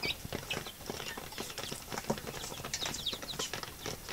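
Young native chickens pecking feed from a plastic feed tray: a fast, irregular patter of faint beak taps, with a few soft high peeps.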